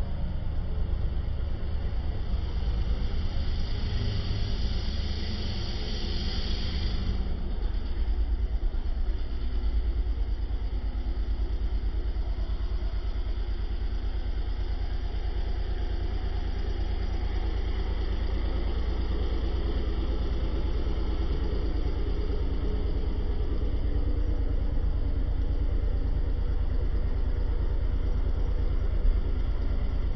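An engine running steadily with a low rumble throughout. A hiss joins it from about three to seven seconds in.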